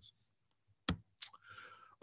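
Two sharp clicks about a third of a second apart, the first louder: a computer mouse or key clicked to advance a presentation slide. A faint hiss follows near the end.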